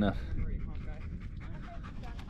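A dog panting close to the microphone.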